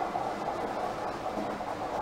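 Steady mechanical noise of a bingo ball machine: plastic balls tumbling in a motor-driven clear globe.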